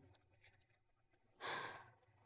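A woman's heavy sigh about one and a half seconds in: a single breathy exhale that fades out.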